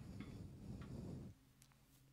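Faint low shuffling and handling noise, with a few light clicks, as someone steps up to a stand microphone; it stops about a second and a half in.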